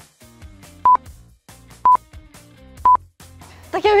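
Three short electronic beeps at one pitch, evenly spaced about a second apart, typical of a quiz countdown sound effect, over a faint background music bed.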